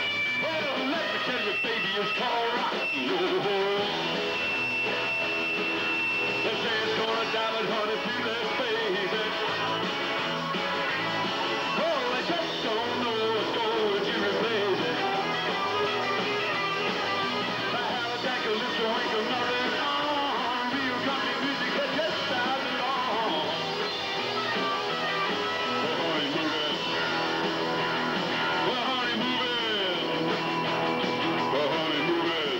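Live rock and roll band playing: electric guitars and bass guitar over a steady beat, continuous throughout.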